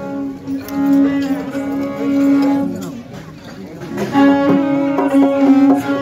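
Punjabi sarangi bowed in long held notes, part of folk music; the playing drops away about three seconds in and comes back strongly about a second later.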